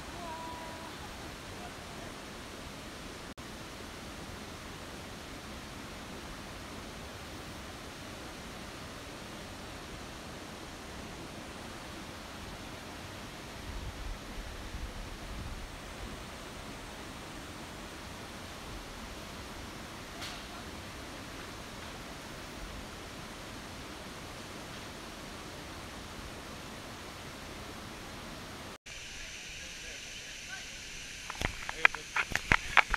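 Steady rush of a waterfall and its cascades: an even, unbroken noise of falling water. A brief low buffeting of wind on the microphone comes about halfway through.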